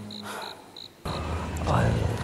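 Crickets chirping in short, evenly repeated pulses as a low background music drone fades out. About a second in, a steady background hiss comes up.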